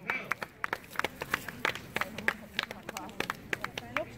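A few spectators clapping steadily by hand, sharp separate claps several times a second, with faint voices beneath.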